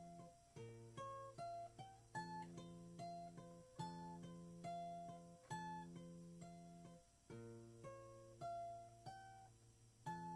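Acoustic guitar fingerpicked softly: single picked notes, about two a second, ringing over held bass notes in an even, slow pattern that shifts to a new chord now and then.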